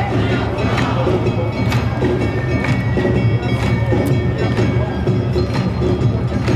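Awa Odori festival band music: drums, shamisen, bamboo flute and a ringing hand gong, played live with a steady beat of sharp strokes a little under a second apart.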